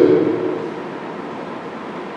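A man's voice trailing off in the first half-second, then a pause filled only by a steady hiss of room noise.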